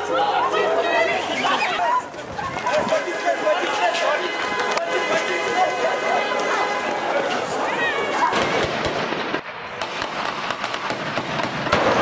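Voices and street noise, then from about eight seconds in a rapid, irregular string of sharp cracks: gunfire during an armed police assault, as heard in television news footage.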